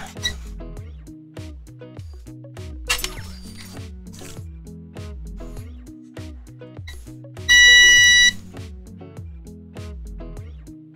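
Background music with a steady beat, and about seven and a half seconds in a single loud, steady beep lasting under a second from a digital multimeter's continuity buzzer as it checks a bulging capacitor for a short.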